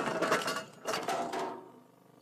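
Metallic clattering and clinking, with a second burst about a second in, fading out near the end.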